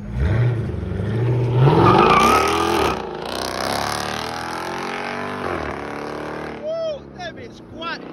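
Jeep Grand Cherokee's V8 revving hard as it launches and accelerates away: the pitch climbs steeply, drops at a gear change about three seconds in, then climbs again and fades as the vehicle pulls off into the distance. A few short whooping calls come near the end.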